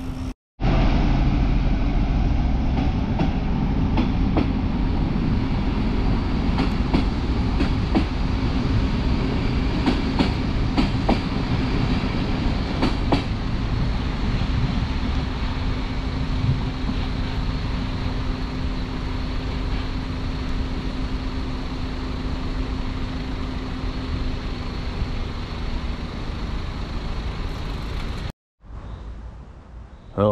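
A train passing close by: a loud, continuous rumble with irregular clacks of the wheels over the rail joints and a steady hum that fades away near the end. It starts abruptly half a second in and cuts off just before the end.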